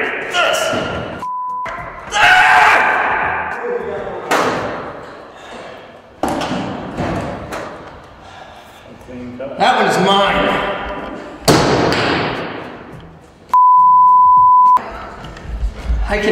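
Men's voices with several sharp thuds and snaps from heavy long-handled cable cutters working on a thick rubber-insulated power cable over a steel frame. A steady beep tone cuts in twice, briefly near the start and for about a second near the end, bleeping out words.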